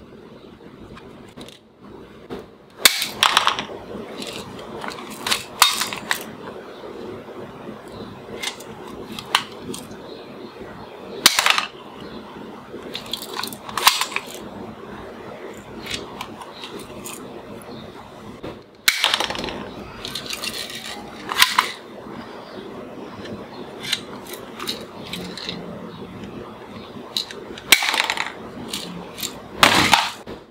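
Small spring-loaded plastic toy pistol being cocked and fired: a string of sharp plastic clacks every few seconds, often in quick pairs, along with small plastic balls and toy bowling pins knocking and clattering on a wooden table.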